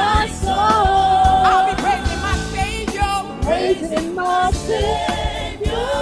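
Live gospel praise music: a woman lead singer holds and slides between sung notes over a band with a steady drum beat, with other voices joining.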